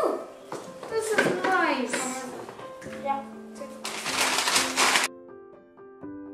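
Children talking and laughing over background piano music. About four seconds in there is a loud noisy burst; then voices and noise cut off suddenly, leaving only the piano music.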